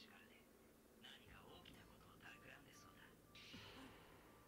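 Near silence with very faint speech, the anime's dialogue playing far down in the mix. A brief soft hiss comes near the end.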